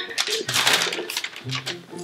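Sticky pizza dough squelching on hands as it is pulled and patted, with a run of quick small clicks as it clings and peels off the skin.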